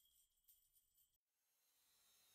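Near silence: the song has ended and only a faint trace of hiss remains, dropping out entirely a little past halfway.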